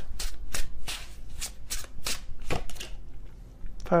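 A tarot deck being shuffled by hand: a quick run of card slaps, about four a second, that stops shortly before the end.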